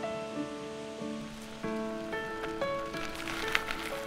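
Background music of plucked acoustic guitar notes. A rustling hiss builds under it through the second half and is loudest near the end.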